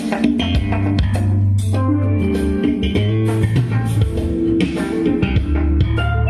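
Music played loud through a worn, cheap speaker cabinet driven by an NR702U power amplifier kit, with heavy, sustained bass notes under a steady beat.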